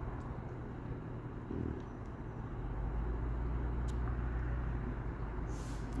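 A motor vehicle's engine running close by as a low, steady rumble that grows louder about halfway through.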